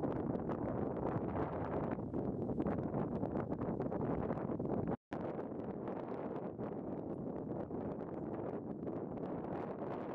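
Wind buffeting the microphone: a steady rushing noise with no calls in it. It breaks off for an instant about halfway through, then goes on a little quieter.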